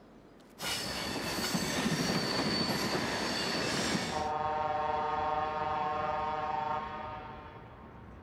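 A train suddenly rushes past loudly for about three and a half seconds. Its horn then sounds as a steady multi-note chord for about two and a half seconds and fades away.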